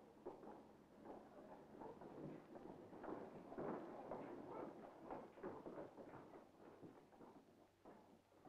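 Faint, busy patter of many children's footsteps and shuffling as a class files out of the room, building about three seconds in and thinning out toward the end.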